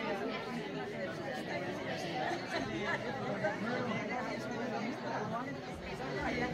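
Many people talking at once in a large hall: a steady hubbub of overlapping conversations as an audience mingles.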